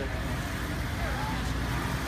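Street traffic: a steady low rumble of vehicle engines, with faint voices in the background.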